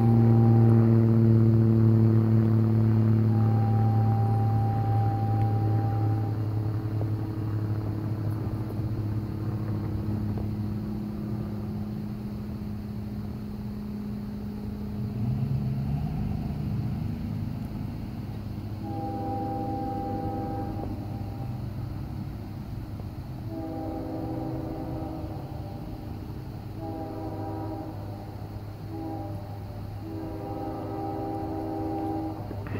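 Locomotive air horn sounding the grade-crossing signal at a distance: two long blasts, a short one, then a long one, starting about two-thirds of the way in. Earlier, a low steady engine hum fades over the first ten seconds, and a road vehicle pulls away with rising engine pitch around the middle.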